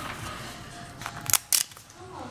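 Wax paper crackling in two short, sharp snaps a little past halfway as a decoupaged notebook, its cover tacky from the humidity, is handled and pulled free of it.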